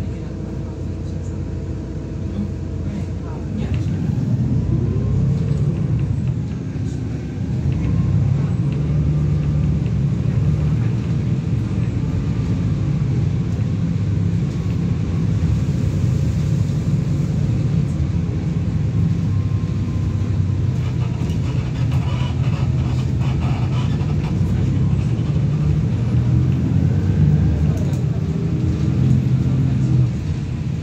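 Single-decker bus's diesel engine and running gear heard from inside the passenger cabin: a steady low drone that grows louder about four seconds in and again around eight seconds as the bus gets under way.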